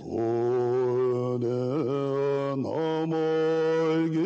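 A Tibetan Buddhist monk chanting alone in a deep voice, holding long level notes with a few short dips and breaks between them.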